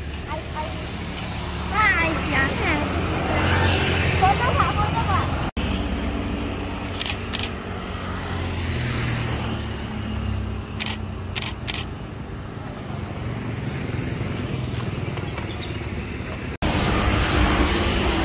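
Road traffic: the engines of passing vehicles, motorcycles among them, with people's voices in the first few seconds. The sound cuts off abruptly twice.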